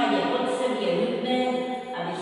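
A woman singing unaccompanied in slow, held notes, the melody stepping down and then back up, in a reverberant church.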